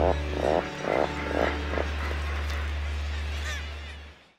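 Atlantic puffins giving short low calls, about five in the first two seconds, over a sustained low music note that is the loudest sound. The music fades out near the end.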